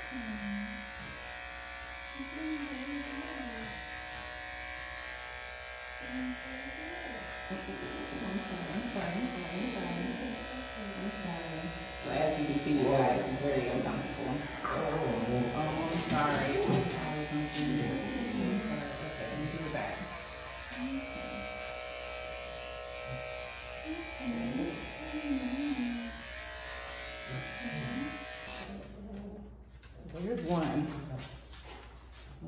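Electric pet grooming clippers with a #10 blade running with a steady hum as they shave a shih tzu's feet and legs against the grain. The hum cuts off shortly before the end.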